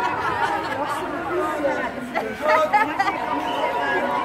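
Crowd of marchers chattering, many voices overlapping at once with no single speaker standing out.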